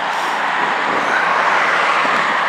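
Steady rushing vehicle noise, growing slightly louder.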